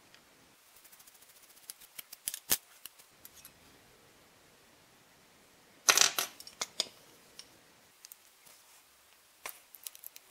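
Light metallic clicks and clinks of a Rogers & Spencer percussion revolver's small steel parts and a screwdriver being handled during disassembly. A run of faint ticks in the first few seconds gives way to a louder cluster of clinks about six seconds in, with one more click near the end.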